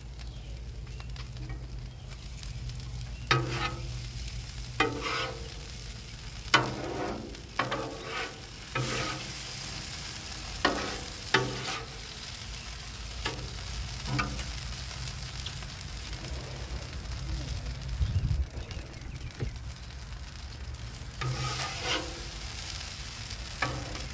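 Apples in syrup sizzling on a hot steel flat-top griddle, with a metal spatula scraping and tapping the griddle surface as the apples are turned and folded over. The scrapes come in clusters, mostly in the first half and again near the end, over a steady sizzle.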